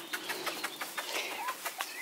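Soft rustling and irregular light ticks of several puppies scampering across a grass lawn, with one brief faint high squeak about three-quarters of the way through.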